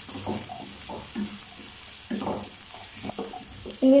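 Diced mixed vegetables (potato, carrot, peas, cauliflower) sautéing in hot oil in a pan, stirred with a wooden spatula. A steady high sizzle runs throughout, with a scraping stir stroke every half second to a second.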